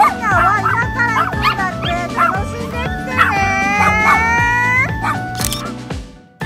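Toy poodles barking and yipping in short bursts over background music with a steady beat, with one longer drawn-out howl a little past halfway.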